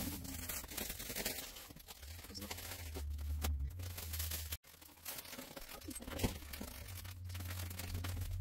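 Plastic bags and papers rustling and crinkling as items are handled and sorted, in irregular bursts. The sound cuts out for an instant about halfway through.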